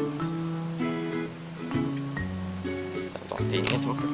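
Background instrumental music with steady held notes. Near the end comes one sharp snip: bypass pruning shears cutting through a green avocado rootstock shoot.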